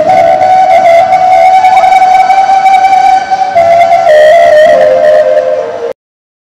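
Flute played into a microphone: one long held note, then a few short notes stepping lower near the end, cutting off suddenly.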